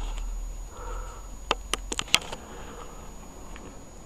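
Quiet garage with a steady low hum, broken about a second and a half in by a quick cluster of five or so sharp light clicks from handling tools or parts.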